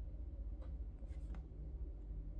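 Faint scraping and light rubbing of a device and its plastic holder being handled on a cloth-covered table, a few soft strokes about half a second and a second in, over a steady low hum.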